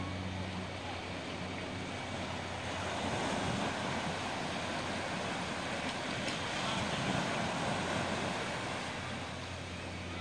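Small waves washing onto a sandy shore, the surf noise rising and falling as each wave comes in.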